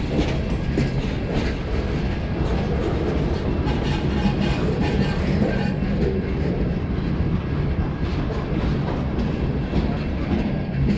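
A Canadian Pacific freight train rolling past. The rumble of its wheels on the rail is steady, with repeated clicks as the wheels pass over the rail joints.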